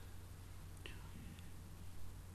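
A pause in a lecture: faint room tone through a microphone, with a low steady hum and a couple of faint clicks near the middle.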